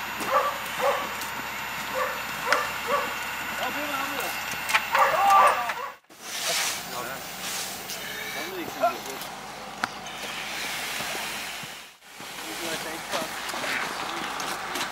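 Indistinct voices of a group of people working outdoors, with a run of short, evenly spaced calls in the first few seconds. The sound cuts out abruptly twice.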